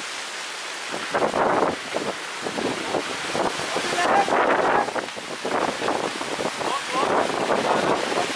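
Storm wind gusting with heavy rain, the wind buffeting the microphone in a continuous rushing noise that swells and eases.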